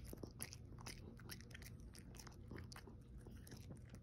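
A Pomeranian chewing something crunchy, heard close up: a quick, irregular run of small crunches and clicks from its teeth.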